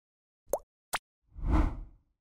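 Animated intro sound effect: two quick rising pops about half a second apart, then a deep whoosh that swells and fades away.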